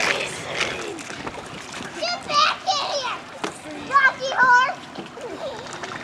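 High-pitched children's shrieks with a wavering pitch, in two bursts about two and four seconds in, over a steady rush of splashing water.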